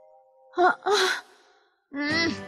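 A young woman's voice giving a dreamy sigh in two parts: a short voiced breath and then a longer, breathier one.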